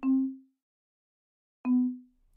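Two short marimba notes from Chrome Music Lab's Song Maker, each sounding as a note is placed on the grid, about a second and a half apart and each dying away within half a second.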